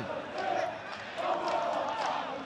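Football stadium ambience: faint distant shouts from players and a sparse crowd over a steady background hiss.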